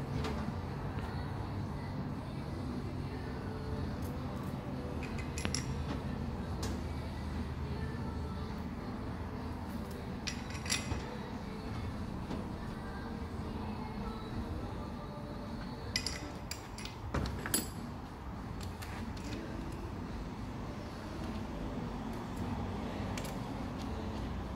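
Small metal clinks and taps of bolts, washers and parts being handled and fitted to a gearbox adapter plate, a few sharp clicks scattered through, over a steady low hum.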